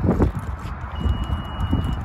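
A single steady high-pitched beep, starting about halfway through and lasting about a second, from a 2020 Honda CR-V's power tailgate as it is triggered to open. It sits over low wind rumble and handling noise on the microphone.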